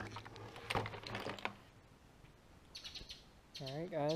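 A sharp knock, then about a second and a half of rustling and clicking handling noise as the camera is moved. After a lull, faint bird chirps come in, and a man's voice begins near the end.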